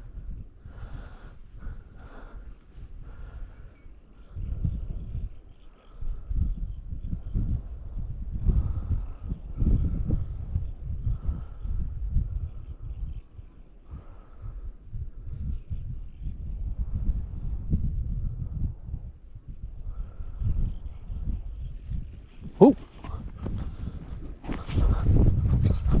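Wind buffeting the microphone in gusts: a low rumble that swells and fades again and again, growing louder near the end.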